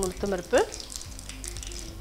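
Peanuts, lentils and a dried red chilli frying in hot oil in a pan, a steady sizzle with a fine crackle of small pops: the tempering for the rice. A short rising voice-like sound stands out in the first half-second.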